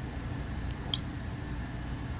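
Low steady background hum, with one small sharp click about a second in as a folding pocket knife is handled in the fingers.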